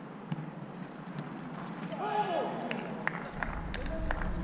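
Football players on an outdoor pitch: one player's shout about two seconds in, followed by a quick run of sharp taps from running feet and the ball.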